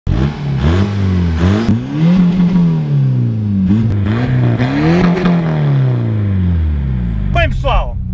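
Tuned VW Bora 110 hp TDI four-cylinder turbodiesel engine revving up and falling back about three times. A man's voice comes in near the end over the steady engine.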